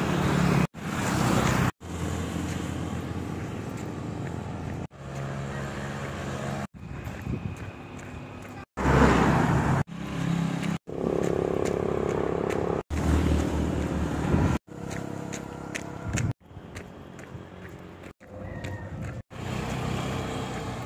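Roadside traffic on a highway: motorcycles and other vehicles running and passing, their engine hum rising and falling. The sound changes abruptly about every two seconds where short clips are spliced together, loudest about nine seconds in.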